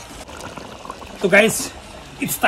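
A metal spoon stirring a thick meat-and-potato curry in a wok, a quiet wet sloshing, broken about one and a half seconds in by a short burst of voice.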